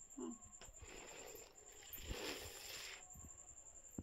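Faint rustle of fabric being handled close to the phone's microphone, swelling for about a second around the middle, after a brief low voice sound at the start.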